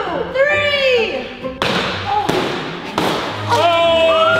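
A bat hitting a cardboard piñata: a sudden thud about one and a half seconds in and another near the three-second mark as it breaks open, after swooping rising-and-falling sounds in the first second. Music starts near the end.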